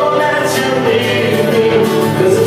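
Live music: a man singing long held notes through a microphone, accompanied by a strummed acoustic guitar.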